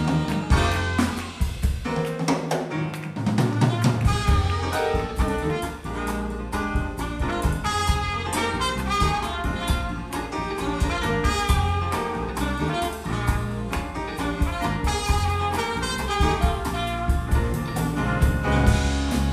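A live jazz band playing, with trumpet and saxophone over drum kit, electric bass, keyboards and electric guitar. The bass drops out for a couple of seconds near the start and comes back in about four seconds in.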